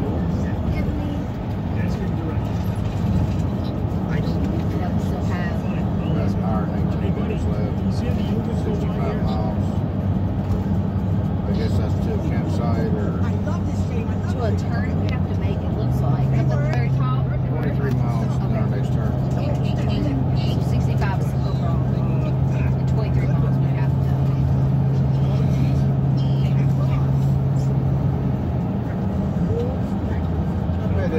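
Car cabin at highway speed: steady low rumble of road and engine noise, with faint indistinct voices underneath. A steady low drone joins about halfway through and stops near the end.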